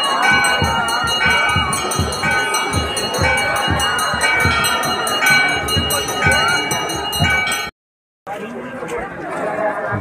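Hindu temple aarti: bells ringing over a steady beat of about three strokes a second, with many voices chanting and crowd noise. It cuts off abruptly about three-quarters of the way through and gives way to quieter crowd noise.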